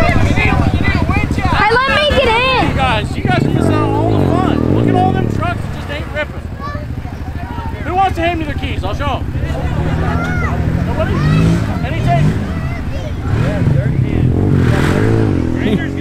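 Quad ATV engine revving up and down about three to five seconds in as it spins through mud, then a lower engine running under people's voices, which are heard throughout.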